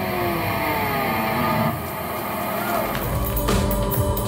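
Live industrial rock band between two songs. The drums drop out and sustained electric tones slide slowly downward in pitch. About three seconds in, sharp rhythmic hits start up again as the next song begins.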